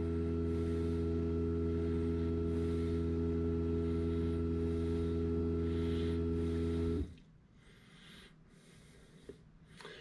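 Fisher & Paykel DishDrawer dishwasher's drain pump running with a steady hum as it pumps out the water after the wash cycle has been cancelled, then cutting off suddenly about seven seconds in once the drawer has drained.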